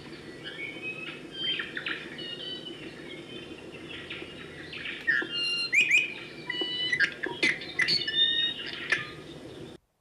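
Birds singing and calling together: many short chirps and whistled notes, some sweeping quickly up or down, growing busier and louder in the second half and cutting off abruptly just before the end.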